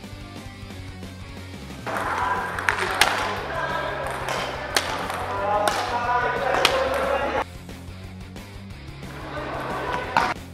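Background music with a steady beat throughout. From about two seconds in, a stretch of live sports-hall sound carries five sharp smacks, then cuts off abruptly about two and a half seconds before the end.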